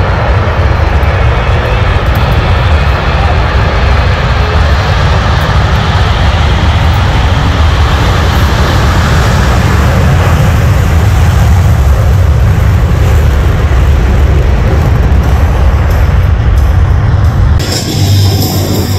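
Four Blue Angels F/A-18 Super Hornets taking off together in afterburner: loud, steady jet noise with a deep rumble, swelling a little around the middle as they pass along the runway.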